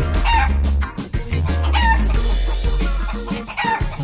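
Chicken call sound effect, three short calls about a second and a half apart, laid over funky music with a heavy bass line.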